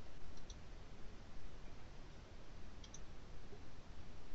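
Low, steady room noise from an open microphone, with two brief clusters of faint clicks, one about half a second in and one near three seconds.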